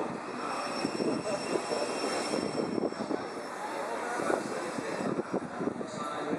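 First Great Western HST (InterCity 125) passing slowly, its Mark 3 coaches' wheels rumbling and clicking irregularly over the track. A thin, steady high whine sounds through the first half.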